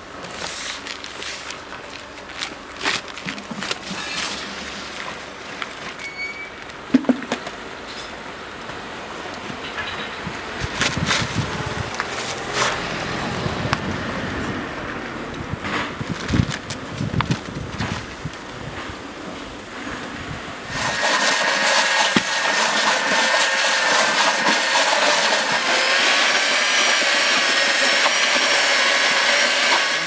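Knocks, clicks and rustling from buckets and a sack of dry mortar being handled. About two-thirds of the way in, an electric paddle mixer starts suddenly and runs loud and steady with a high motor whine as it mixes mortar in a bucket, then cuts off at the end.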